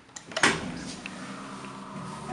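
1970s elevator: a floor button clicks, then a loud mechanical clunk about half a second in, followed by a steady hum of the elevator machinery as the car gets under way.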